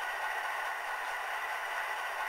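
Sound decoder in an HO-scale E8 model locomotive playing an idling dual EMD 567 prime mover through two tiny speakers, heard as a steady hiss with faint steady tones and almost no bass.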